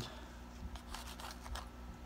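Faint handling noises: a few light rustles and clicks as a packet of treatment powder and its scoop are handled.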